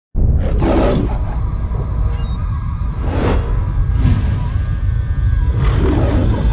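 Dramatic TV-show intro: a heavy low rumble under music, with lion roar sound effects surging in several times.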